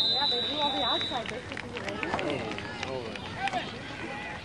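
A referee's whistle blown once, one steady shrill tone lasting over a second and stopping about a second in, blowing the play dead after a tackle. Spectators chat and laugh close by throughout.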